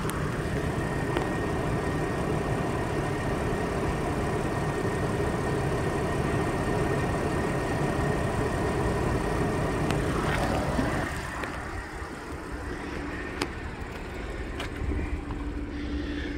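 Car engine idling, a steady hum heard from beneath the vehicle, dropping in level about eleven seconds in.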